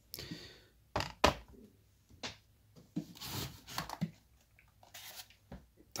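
Hands setting clear plastic boxes and a bottle down on a wooden model bridge deck to weigh it down. A few sharp knocks and taps, the loudest about a second in, with rustling and rubbing between them.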